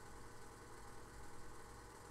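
A pause in the talk holding only a faint, steady low hum and hiss: the room tone of the recording.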